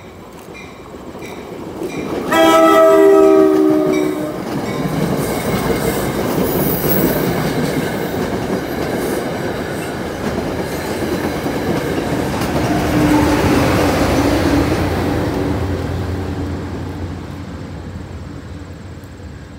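NJ Transit commuter train sounding its horn, one chord-like blast of about two seconds, a couple of seconds in, then passing close at speed with wheel and rail noise that swells and fades away near the end.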